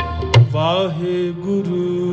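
Kirtan music: harmoniums holding a steady chord while tabla strokes, with deep bass-drum thumps, stop about half a second in. A brief sliding note follows, then the harmonium chord sustains alone.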